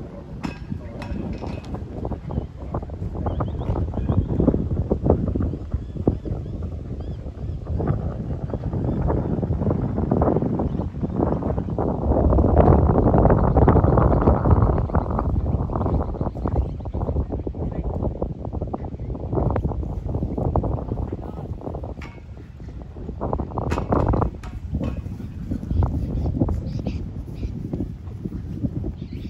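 Wind buffeting the microphone, a rumbling gusty noise that swells to its strongest about halfway through and eases off near the end.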